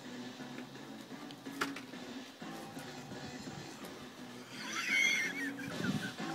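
A person's high, wavering voice for about a second near the end, much like a horse's whinny, over faint background sound with a single click about a second and a half in.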